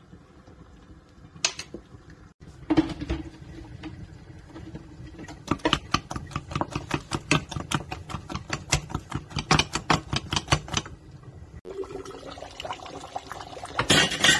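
Wooden spatula beating okra sauce in a stainless steel pot, knocking against the pot in a fast, even rhythm of about five strokes a second for several seconds.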